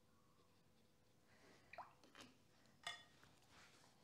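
Near silence with a few faint, brief clinks and a little splash about halfway through: a watercolour brush dipped in the water pot and tapped against its rim, then worked into the paint palette.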